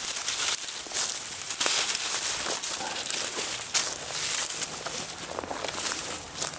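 Footsteps through dry brush and bramble stems, with irregular rustling and crackling of twigs and leaves.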